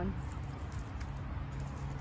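Garden scissors snipping a dead tomato stem with a single faint click about a second in, over a steady low rumble.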